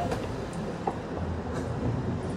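A steady low rumble of city background noise with a faint hum, broken by one short click about a second in.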